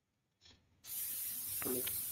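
Steady hiss of a video-call participant's microphone, which comes on suddenly about a second in after near silence as the mic is unmuted. A faint voice shows through the hiss near the end.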